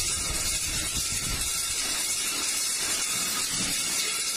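Steady, even hiss of background noise, with no distinct machine rhythm or knocks.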